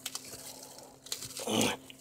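Thin plastic wrap crinkling and rustling faintly as a small knotted bag is twisted open with one hand. A short strained grunt comes near the end.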